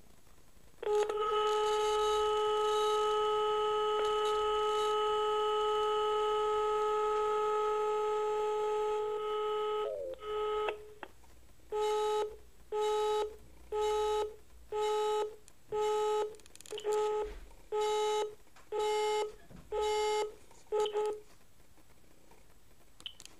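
Call tones played through a Siemens mobile phone's speaker: one long steady tone from about a second in to about ten seconds, then a busy signal of short beeps about once a second. The call is not getting through: it is blocked.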